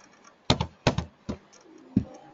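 Computer keyboard keystrokes: several separate, irregularly spaced key clicks while code is typed and edited.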